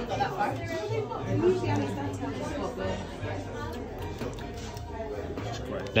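Indistinct chatter of several people talking at once in a restaurant dining room, with no single voice standing out.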